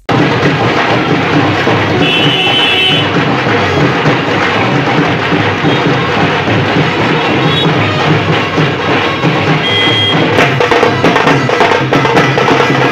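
Indian wedding procession (baraat) band playing, with loud, busy drumming and a few brief high notes over it.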